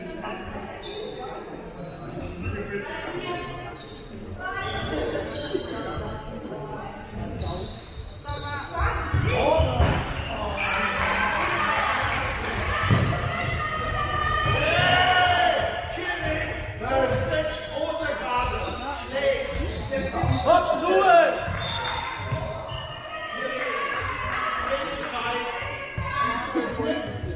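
Handball bouncing on a sports-hall floor during play, with players shouting and calling to one another, echoing in the hall. The shouting grows louder and busier from about nine seconds in.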